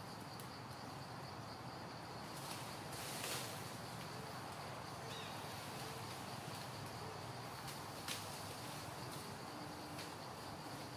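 Forest insects droning steadily on one high pitch over a soft outdoor hiss, with a brief louder noise about three seconds in and a sharp tick about eight seconds in.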